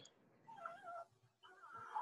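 A faint, short, high-pitched wavering call about half a second in, followed by a faint murmur.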